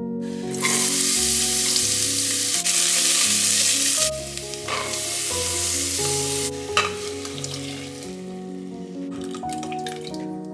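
Diced onion and courgette sizzling as they fry in a stainless steel saucepan, stirred with a wooden spoon, over gentle background piano music. The sizzle starts about half a second in, is loudest for the first few seconds and dies away over the last few.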